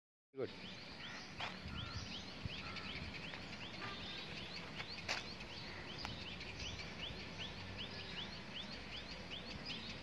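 A bird calling over and over, a short rising note repeated about three times a second, over steady outdoor background noise. A single sharp knock about five seconds in.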